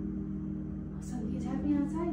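A woman's voice talking quietly from about a second in, over a steady low hum.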